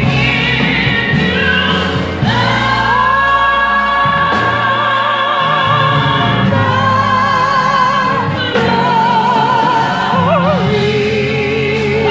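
Singing: a high voice holds long notes with vibrato over steady instrumental accompaniment.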